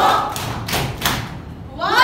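About three thuds of bare feet stomping in unison on a tiled floor, roughly a third of a second apart. Near the end the group's voices come in together with a rising shout.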